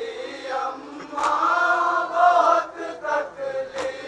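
Male voices chanting a noha, a Shia mourning lament, in a slow sung line. Two sharp chest-beating slaps of matam land about a second in and just before the end.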